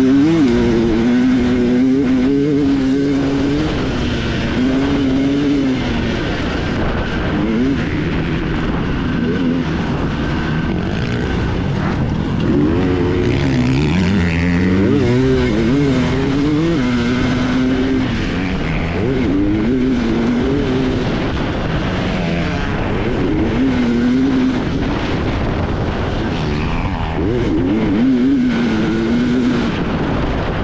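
Two-stroke dirt bike engine at race pace, heard from on the bike, its pitch climbing and dropping again and again as the rider accelerates, shifts and rolls off through the course.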